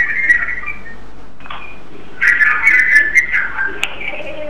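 A high, wavering whistling tone that fades within the first second, then comes back louder after about two seconds, with a short click just before the end.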